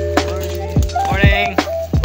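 Background music with a steady beat: deep, pitch-dropping kick drums over held bass notes, with a short bending melodic phrase about a second in.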